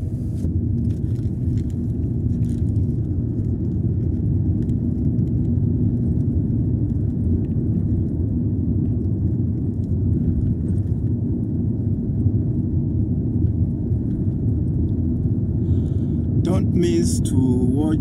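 Steady low rumble of road and engine noise heard from inside a car's cabin while it cruises on a paved road, with a faint steady hum running through it. A man's voice starts near the end.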